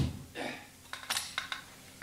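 Radio-drama sound effect of a soldier grounding a musket: a sharp knock right at the start, then a few light metallic clinks about a second in.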